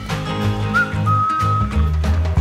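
Background music with a bass line and a whistled melody: a short rising note, then a held note a little past the middle.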